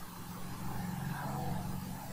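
A faint, steady low hum that grows slightly louder about a quarter of a second in.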